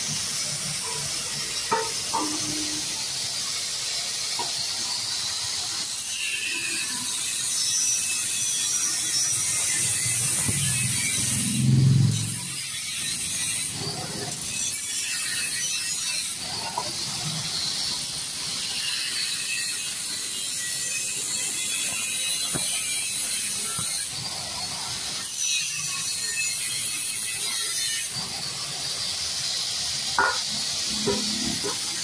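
Metal silencer parts being handled and worked by hand: scattered metallic clicks and scrapes over a steady hiss, with one louder dull thump about twelve seconds in.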